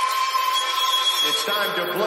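A steady, high electronic beep tone held in a break in the music, with a voice sample coming in about a second in.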